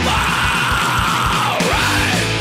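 Heavy metal song with distorted electric guitars, bass and drums, over which a long held high note, a yell or a guitar squeal, arches and then drops away near the end.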